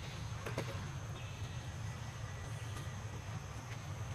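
Outdoor background: a steady low rumble with a thin, steady high insect drone, and a couple of soft clicks about half a second in.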